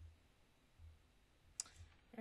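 Near silence with a few soft low thuds and one sharp click about one and a half seconds in.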